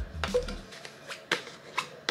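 Screw lid of a clear jar being twisted by hand: a few separate sharp clicks and scrapes from the threads, spaced about half a second to a second apart.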